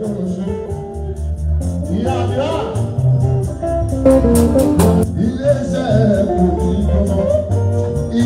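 Live fuji band music: a male singer singing into a microphone over electric guitar, bass and a steady percussion beat.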